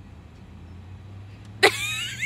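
A low steady hum inside a parked car's cabin. About one and a half seconds in, a loud burst of high-pitched laughter breaks in.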